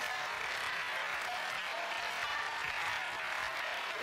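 Studio audience laughing: a steady wash of many voices with no single speaker standing out.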